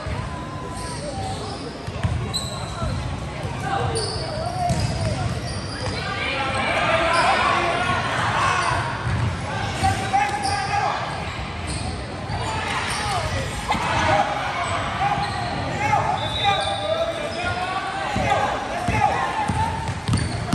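A basketball bouncing on a hardwood gym floor, with voices of players and spectators calling out, all echoing in a large gym. Brief high squeaks of sneakers on the floor come now and then.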